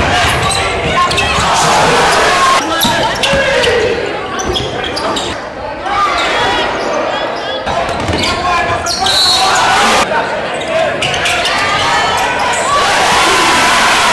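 Basketball dribbled on a hardwood gym floor, the bounces mixed with players' and spectators' shouting and chatter echoing around a large gym.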